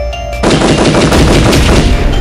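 Rapid automatic gunfire, a dense run of shots starting about half a second in and continuing, over music with a low bass.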